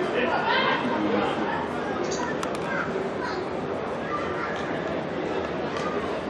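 Stadium ambience: scattered shouts and chatter from spectators and players over a steady murmur.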